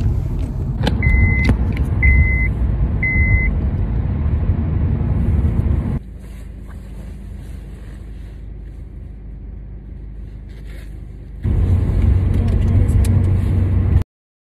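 Car cabin road noise from a car driving, a steady low rumble, with three short high electronic beeps about a second apart near the start. About 6 s in it drops to a quieter cabin, and the rumble of driving returns near the end.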